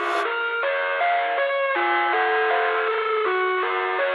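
Background music: an instrumental stretch of a pop song, a melody of short notes stepping up and down, with no singing. A brief sharp tick comes right at the start.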